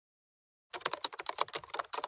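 Computer keyboard typing sound effect: a fast run of key clicks that starts about three-quarters of a second in and goes on for about a second and a half.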